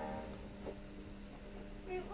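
A quiet lull between songs in a children's alphabet app on a tablet: the last of a sung phrase dies away at the start, leaving faint room noise with a steady low hum until a voice starts again at the very end.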